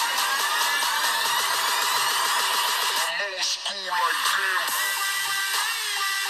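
Electronic trap remix playing: a rising synth sweep climbs over the first three seconds, then the track breaks to a pitch-bending vocal sample about three seconds in before the music fills back in.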